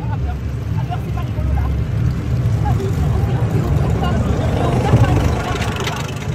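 Steady low rumble with faint voices in the background.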